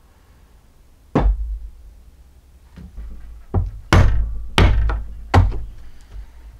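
Hatchet being struck into the end of a green-wood branch clamped in a bench vise, splitting it: a sharp knock about a second in, then four knocks in quick succession in the second half.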